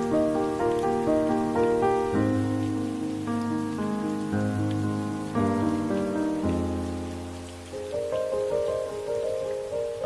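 Slow, gentle piano music, single notes and chords struck and left to ring, with a deep bass note changing every few seconds, over a steady hiss of rain.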